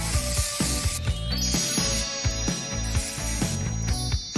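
Background music with a steady beat; over its first second or so an aerosol spray-paint can hisses as paint is sprayed onto water.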